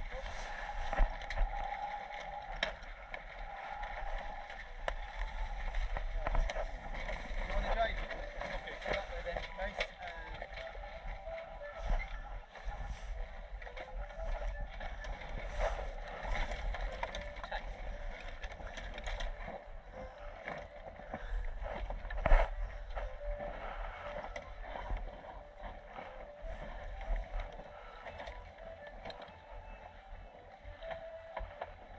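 A sailing yacht moving under sail: water washing along the hull and wind on the microphone, with scattered light clicks and knocks from the boat and one louder knock a little after twenty seconds.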